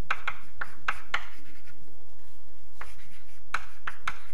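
Chalk writing on a blackboard: a run of short strokes, about five in the first second or so, a pause, then three more near the end.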